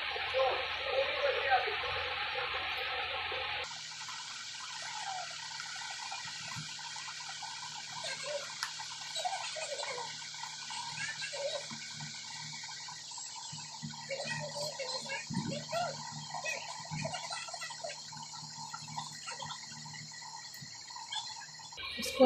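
Small, irregular wet squishing sounds of hands folding and pressing taro leaves thickly spread with gram-flour paste, over a steady background hum. The sound changes abruptly about four seconds in.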